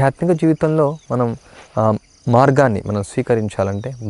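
A man talking steadily in Telugu, with a constant faint high-pitched trill underneath.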